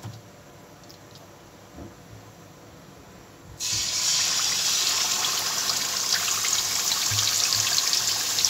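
Hot oil sizzling and crackling as a marinated chicken leg goes into the frying pan. It starts suddenly about three and a half seconds in and then runs steadily.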